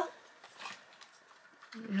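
A short lull in conversation with one faint, brief sound about half a second in, then a woman's voice starting again near the end.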